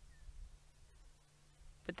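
Near silence: a faint low rumble and steady hum, with one tiny faint chirp near the start and a single soft click about halfway through.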